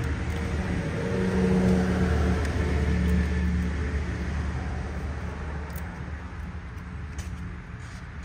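Low rumble of a motor vehicle engine running nearby, swelling to its loudest a second or two in and then slowly fading.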